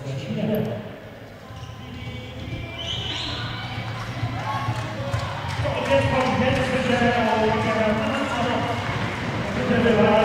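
Indistinct voices of people talking in a sports hall, with handballs bouncing on the court floor.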